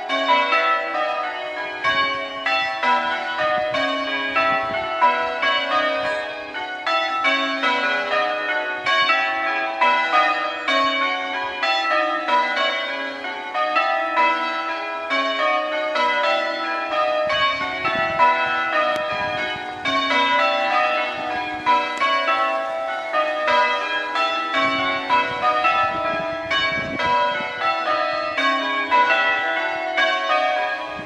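Change ringing on a ring of six Whitechapel-cast church bells, tenor about 6 cwt in B: an unbroken, evenly paced run of bell strikes, the bells sounding one after another in changing orders.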